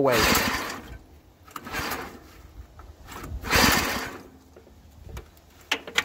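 Recoil starter rope pulled three times on a DuroMax small engine that has just been submerged, each pull a rough rasp of about a second as it cranks over without firing; the carb is taken to be full of water. A few light clicks near the end.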